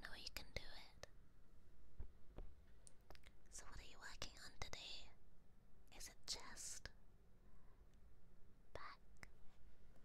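A woman whispering in short phrases with pauses between them.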